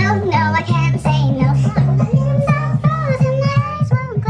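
A young woman singing along to a pop song that plays with a pulsing bass beat.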